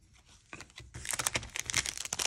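Foil wrapper of a Panini Mosaic football card pack crinkling as it is handled and torn open. The crackling starts about half a second in and gets louder about a second in.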